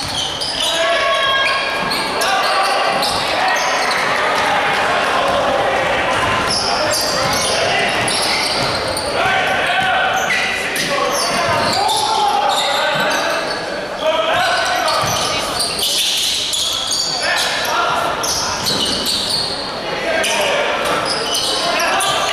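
Live basketball game court sound in a large echoing hall: the ball bouncing on the wooden court among indistinct shouts from players and spectators.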